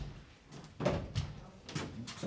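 Footsteps on a wooden stage floor, a few irregular knocking steps: one sharp knock at the start, then more about a second in and near the end.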